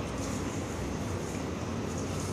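Steady background noise with a low hum, over soft scrapes of a silicone spatula stirring chopped lulo and sugar in a nonstick pot.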